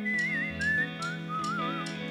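A live band playing with a whistled melody on top: a clear, wavering whistle over held guitar chords and a steady beat of about three light hits a second.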